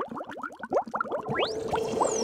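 Bubbling sound effect: a quick run of short rising bloops, like a lab flask bubbling over, with a long rising glide near the end.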